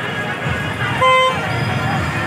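A single short vehicle horn toot, about a third of a second long, a little after a second in, over steady street traffic and crowd chatter.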